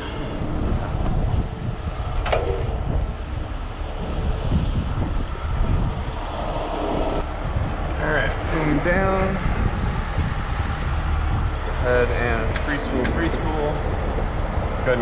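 Heavy rotator tow truck's diesel engine running steadily with a deep rumble, with short stretches of indistinct voices about eight and twelve seconds in.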